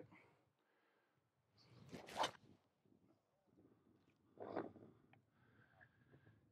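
Near silence with a few brief faint noises: a short one about two seconds in, another about four and a half seconds in, and a faint tick just after five seconds.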